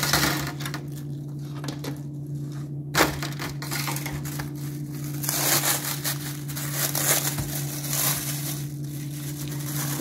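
Aluminium foil crinkling as it is pulled away, then plastic wrap rustling as it is peeled off a cake, with one sharp knock about three seconds in.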